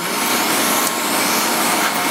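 Steady, loud rushing airflow from laser hair removal equipment running during a treatment.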